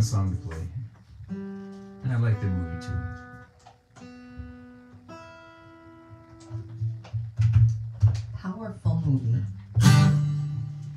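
Acoustic guitar being picked: a few notes and chords struck and left to ring out, then busier playing in the last few seconds.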